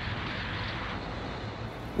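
Steady rush of wind and road noise from a moving motorcycle, with no distinct engine note standing out, easing slightly near the end.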